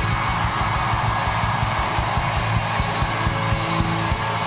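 Rock band playing live with no vocals: an even kick-drum beat and held low bass notes continue under a loud wash of crowd cheering that swells at the start.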